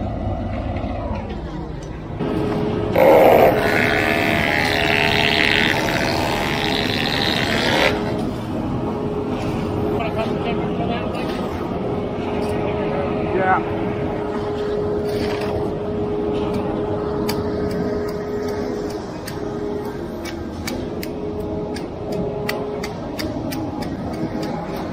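A vehicle engine running steadily at idle, with a loud rushing noise for about five seconds starting some three seconds in, and a quick run of light clicks or taps near the end.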